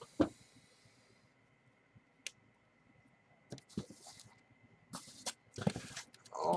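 Cardboard product boxes being handled and stacked: a few scattered taps and short rustles, with a cluster of handling noise near the end.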